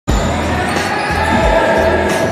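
A basketball bouncing on a hardwood floor: a few low thuds, irregularly spaced, over a steady musical bed.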